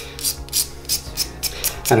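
Short, quick rasping strokes, about four a second, as a Tusk resin guitar saddle is shaved down by hand. It removes the string gouges and restores one common contact point for the strings, taking a little height off the saddle.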